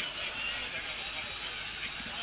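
A steady background hiss with a faint high tone running through it, and no words.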